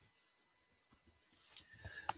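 Near silence: faint room tone from an open microphone, with a few soft clicks and a faint rise of noise near the end.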